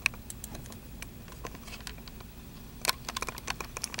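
Light clicking at a computer desk: a few scattered clicks, then a quicker run of them near the end, over a low steady hum.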